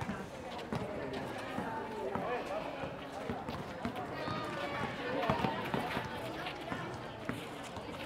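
The sound of an outdoor basketball game on an asphalt court: scattered voices of players and onlookers calling out, running footsteps and a few knocks of the ball on the court.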